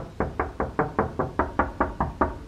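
Rapid knocking on a hotel room door: about ten quick, evenly spaced knocks, roughly five a second.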